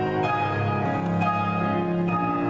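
Instrumental ballet class music with sustained, bell-like notes; the notes change about a quarter second in and again around one second in.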